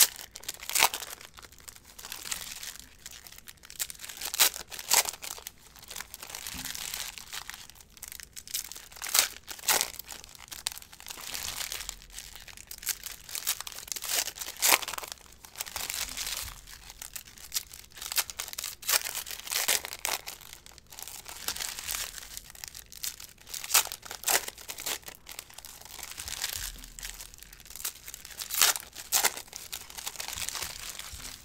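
Foil trading-card pack wrappers being torn open and crinkled, with cards being handled and sorted in between. There are irregular crackles and rustles throughout, with sharper tearing strokes scattered among them.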